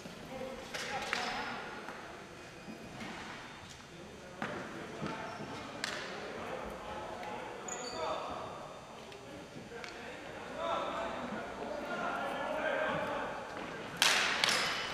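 Indistinct voices of ball hockey players echoing in a gymnasium, louder near the end. A few sharp knocks of sticks and ball on the hard floor come through.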